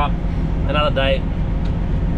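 Kenworth K200 cab-over's Cummins diesel idling steadily as a low rumble heard inside the cab, with a couple of short snatches of a man's voice near the middle.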